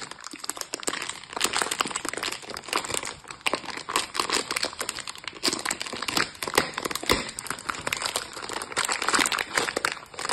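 Thin clear plastic wrapping crinkling as it is handled and slit open with a craft knife: a continuous run of small sharp crackles.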